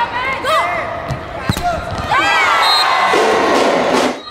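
Indoor volleyball rally: shoes squeaking on the court and sharp ball hits about a second and a half in. From about two seconds in, a loud crowd cheer marks the set-winning point.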